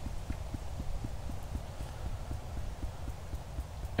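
Fingertips tapping on the collarbone point in EFT tapping: a quick, steady patter of dull taps, about six a second.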